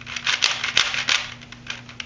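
Rubik's Icon cube's plastic layers clicking and clacking as they are turned quickly by hand, freshly lubricated with silicone spray so the turns run smoothly. A fast run of clicks that thins out near the end.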